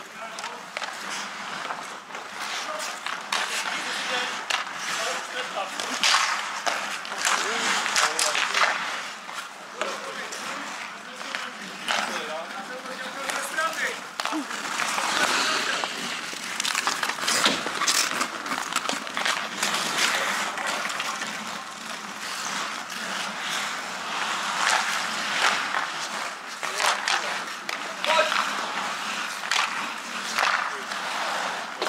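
Ice hockey play on an outdoor rink: skate blades scraping across the ice, with frequent sharp clacks of sticks on the puck and boards, and indistinct players' voices.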